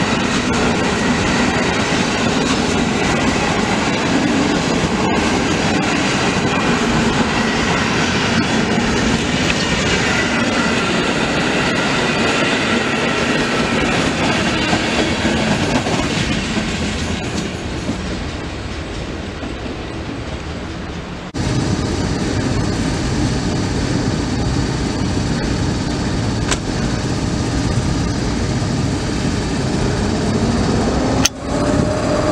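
Passenger train coaches rolling past at close range: steady wheel-on-rail rumble with clickety-clack over rail joints, fading somewhat as the end of the train goes by. About two-thirds of the way through, a sudden cut brings in another train's louder, deeper rumble.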